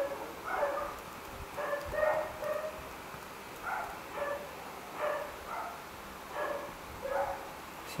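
Short, high-pitched whines from an animal, repeated about every half second to a second, with no words over them.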